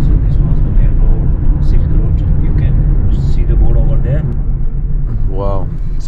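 Road noise inside a moving car's cabin: a steady low rumble of tyres and engine at cruising speed. Faint voices murmur in the cabin, with a short vocal sound near the end.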